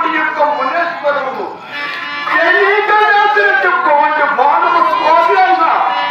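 A man singing a verse in a drawn-out, declamatory style, with long held notes that bend in pitch, accompanied by a harmonium.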